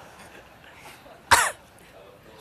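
A single short, loud cough close to the microphone about a second and a half in, over faint background voices.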